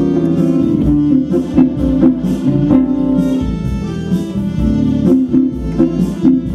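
Instrumental band music: electric lead guitar over acoustic guitar and sustained keyboard chords, with a steady pulse.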